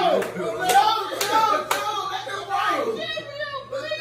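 People talking over each other in a room, with four sharp hand claps about half a second apart in the first two seconds.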